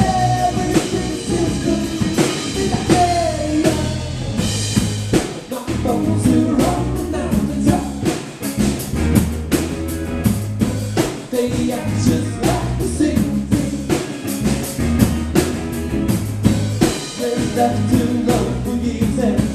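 Live rock band playing a song: a drum kit keeps a steady beat under bass and guitar, with a voice singing.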